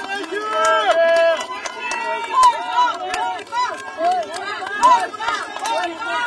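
A crowd of many voices calling out and talking at once, high-pitched voices overlapping throughout, with scattered sharp clicks among them.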